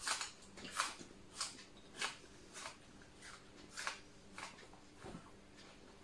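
Close chewing of fresh herbs and greens: soft, crisp crunches about every half second, over a faint steady hum.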